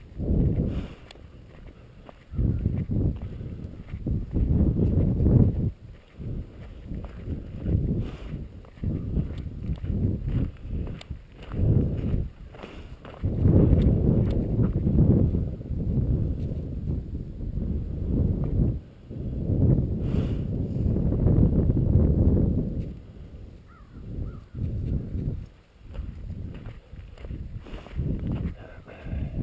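Footsteps of a person and a leashed dog on a gravel road, with long, uneven low rumbles on the microphone that swell and die away over several seconds at a time.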